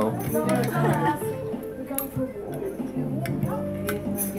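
Background music with voices talking, and a few light metal clinks from escargot tongs and a small fork against the shells and the metal snail dish.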